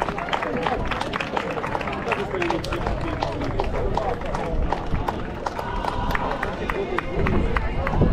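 A small outdoor crowd applauding with scattered, uneven hand claps, mixed with people talking. A low rumble comes in near the end.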